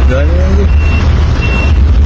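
Steady low rumble of vehicles in street traffic, with a short spoken exclamation near the start and a high electronic beep sounding twice, each beep brief and steady in pitch.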